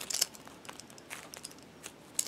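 Faint crackling and clicking of a frozen polyurethane-foam squishy toy being squeezed and handled in the hands, with a brief cluster of crackles right at the start.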